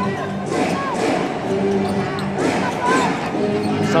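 A basketball being dribbled on a hardwood court, with the short chirps of sneakers squeaking as players move, over steady arena background music.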